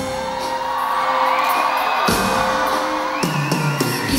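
Amplified live pop music in an arena, heard from the audience: an instrumental break of sustained synth tones with a heavy hit about two seconds in, while the crowd whoops and cheers.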